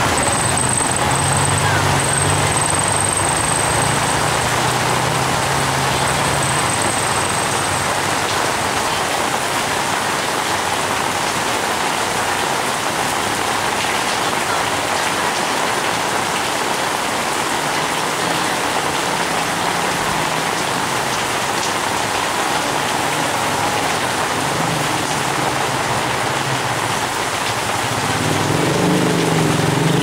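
Heavy tropical rain pouring steadily onto a flooded street. A motor tricycle's engine goes by in the first several seconds, and a motorcycle's engine grows louder near the end.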